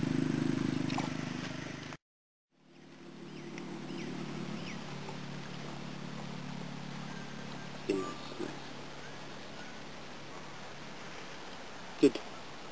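A steady low hum, like a distant motor, that drops out briefly about two seconds in and fades back. Faint short high chirps sound over it, with a soft thump near the end.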